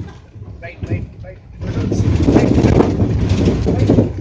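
Cabin noise inside a moving van: a steady low engine and road rumble with indistinct voices, growing much louder about one and a half seconds in.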